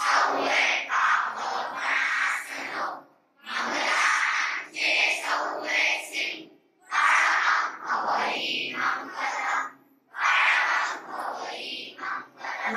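Voices chanting a prayer into a microphone, in phrases of about three seconds with short breaks for breath between them.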